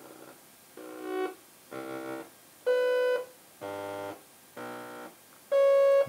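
Synthesizer notes from a eurorack patch running through a Zlob Modular Foldiplier wave folder with its fold turned all the way off: six short separate notes about a second apart, each at a different pitch and tone, the loudest near the middle and at the end.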